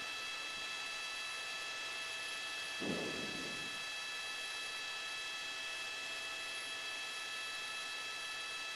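Steady hiss with a few faint fixed high whines, the cabin noise of a news helicopter heard through its open microphone. A brief low murmur comes about three seconds in.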